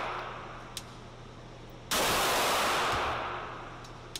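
A 9mm Glock 17 pistol shot in an indoor range about two seconds in: a sudden blast whose sound stays level for about a second and then fades slowly as it echoes off the range walls. The start carries the dying tail of the shot before, and a faint click comes just before the one-second mark.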